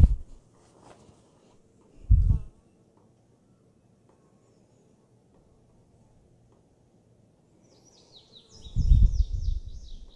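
A small bird chirps a quick run of short, falling high notes near the end. The background is otherwise quiet, broken by brief low thuds about two seconds in and near the end.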